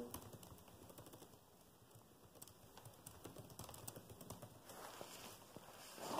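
Faint typing on a computer keyboard: a run of soft key clicks as text is entered.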